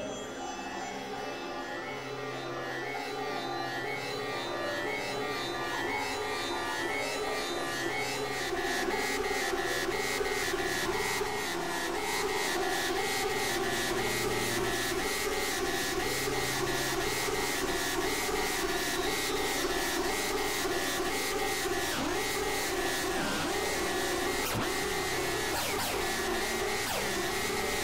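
Experimental electronic synthesizer music: layered drones and tones stepping between pitches over a fast, even pulsing that swells louder through the first several seconds. A few pitch swoops come near the end.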